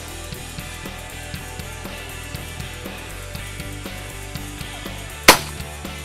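Background rock music with a steady beat, and a single loud shotgun shot about five seconds in.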